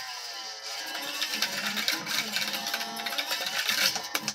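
Electric guitar played with rapid, continuous picking on a black metal riff, the notes changing pitch as the riff moves.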